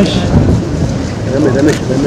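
Dense low rumbling noise, with voices talking over it about a second and a half in.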